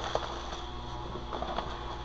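Electric fan running with a steady hum, with a couple of faint rustles as packing peanuts are handled.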